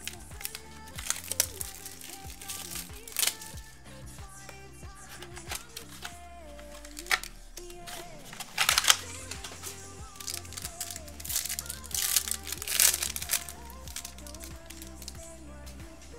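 Trading card pack wrappers crinkling in several short bursts as packs are opened and handled, the loudest bursts about halfway through and again near the end, over steady background music.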